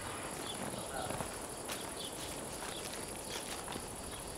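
Outdoor insect drone, a steady high-pitched buzz like crickets or cicadas, with a few faint light steps or clicks on dry ground and brief faint distant calls.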